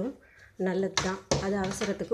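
A woman speaking, starting about half a second in after a brief pause.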